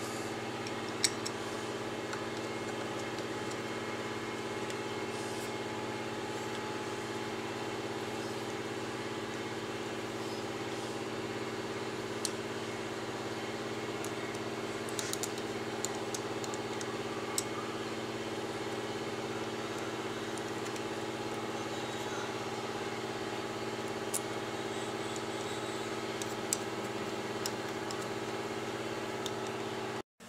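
A steady machine hum with several fixed tones runs at an even level, like a motor running nearby, with a few small sharp clicks of screws and a screwdriver on the pump's metal body. The hum cuts off suddenly at the end.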